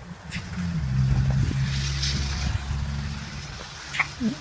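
Car engine and road noise heard inside the moving car's cabin: a low steady hum, with a brief rush of hiss about two seconds in.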